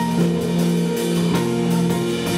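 Band playing: keyboards and electric bass holding sustained notes over a drum kit keeping a steady beat of about three strokes a second.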